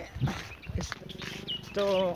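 A short pause in a man's speech with a couple of faint low thumps early on, then the man's voice starting again near the end on a long drawn-out vowel.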